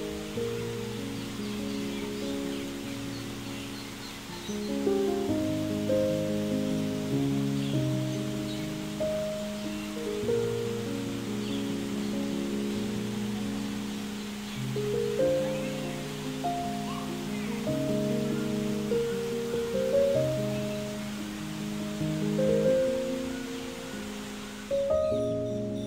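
Slow, gentle piano music with soft, held chords changing every second or so.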